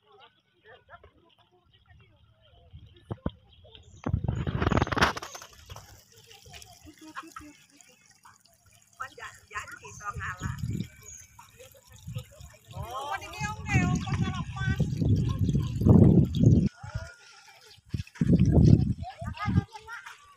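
Voices of several people talking and calling at a distance, broken by a few loud bursts of low rumbling noise.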